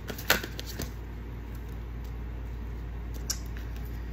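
A deck of tarot cards shuffled by hand: soft sliding with a few sharp snaps of the cards, the loudest just after the start, over a steady low hum.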